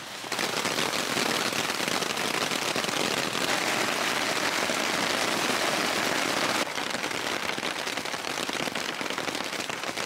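Heavy rain hammering down on waterproof nylon, a tent fly and a rain hood close by: a dense, crackling patter of drops. It drops a little in level about two-thirds of the way through.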